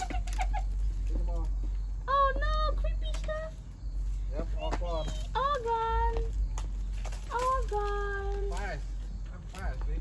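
A young child's high-pitched wordless squeals and calls, several short rising-and-falling cries with two longer held ones in the middle of the stretch.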